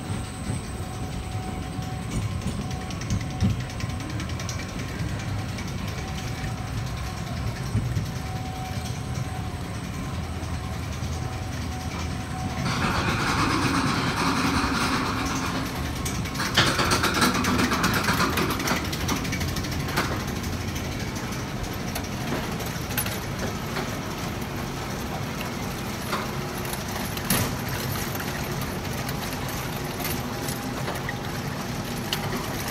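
Roller coaster train rolling out of the station and starting up the chain lift hill, with a steady mechanical rumble and clatter. It gets louder and grinds for several seconds about halfway through as the train reaches the lift, then goes back to a steady rattle with scattered clicks as it climbs.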